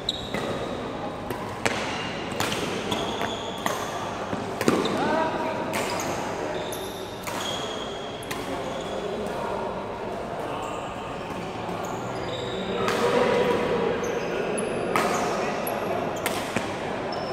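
Badminton play on an indoor court: sharp racket strikes on the shuttlecock at irregular intervals, short high shoe squeaks on the court floor, and voices in a reverberant sports hall.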